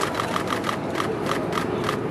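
Rapid, even mechanical ticking, about seven ticks a second, with people talking faintly in the background.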